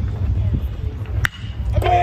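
A single sharp ping of a metal baseball bat hitting a pitched ball, about a second in. Shouting voices start up near the end, over a low steady rumble.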